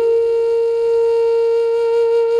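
Background score: a flute holds one long, steady note.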